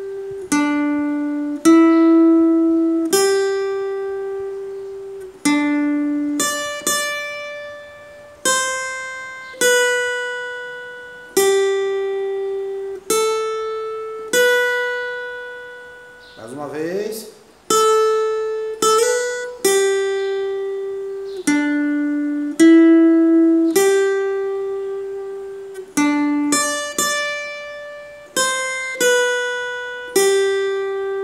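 Acoustic guitar played slowly note by note, each single note plucked and left to ring and fade before the next. A brief gliding sound comes about halfway through.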